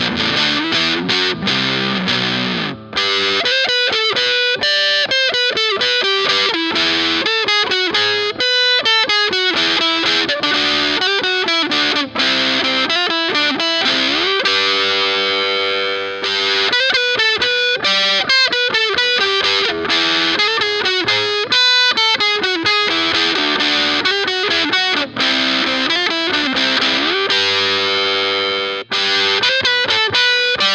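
Electric guitar, a Jag-Stang-style offset kit guitar, played through overdrive: distorted riffs mixing single notes, slides and chords, with brief breaks about three seconds in, around the middle and near the end.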